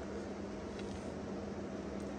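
Steady low hum with a faint, even hiss: background room tone, with no distinct event.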